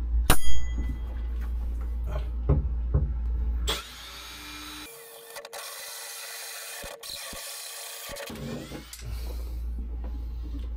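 Cordless drill spinning a hole saw to cut a hole for a pipe, running with a steady whine for about five seconds from roughly four seconds in. Before it come a sharp click near the start and a few lighter knocks as the hole saw is handled.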